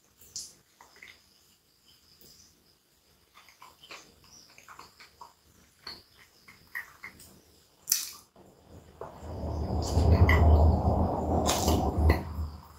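Close-miked eating sounds from a hot dog: small wet mouth and finger-licking clicks, then a sharp bite about eight seconds in. A louder, low muffled sound of closed-mouth chewing follows for the last few seconds.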